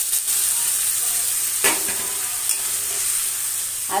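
Fish and potato curry sizzling steadily in a metal kadai as water is poured in and stirred with a metal spatula, with one sharp clink about one and a half seconds in.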